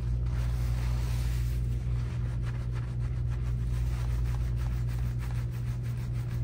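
Gloved hands scrubbing and squishing shampoo lather through wet, coily hair in quick repeated strokes, over a steady low hum.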